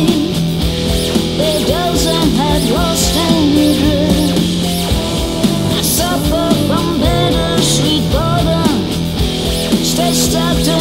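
Alternative rock band playing an instrumental passage: guitar, bass and drums under a lead line that bends and slides in pitch, over a steady low note.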